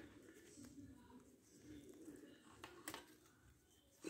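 Near silence: room tone with faint clicks of small plastic figure parts being handled, one a little louder about three seconds in.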